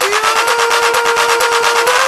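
Dutch house DJ mix: a single horn-like synth note held at one steady pitch for nearly two seconds over fast, dense percussion.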